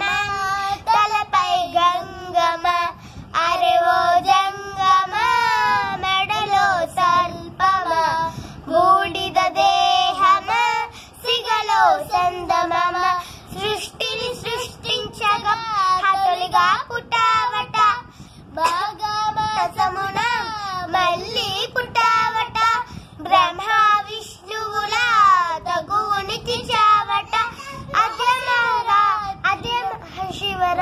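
Two young girls singing together unaccompanied, a melodic chant sung in short phrases with the pitch bending up and down.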